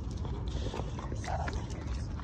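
A dog moving about on a concrete floor: a few quick clicks and taps of its claws, and a brief short sound from the dog just past the middle.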